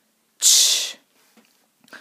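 A woman saying the pure phonics sound 'ch' once, a short unvoiced hiss about half a second in.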